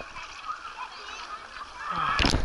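Water rushing along the shallow runout channel of a water slide as a rider slides through it, with a few short high-pitched voice sounds over it. The splashing builds just before the end.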